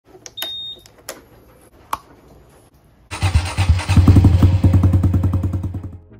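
Honda Super Cub C125 ignition knob turned with a few clicks and a short high beep, then its single-cylinder four-stroke engine starts about three seconds in and idles with an even, rapid beat, dying away just before the end.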